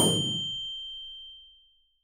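A single bright bell ding over a short whoosh, ringing out and fading over about a second and a half: the notification-bell sound effect of a YouTube subscribe animation.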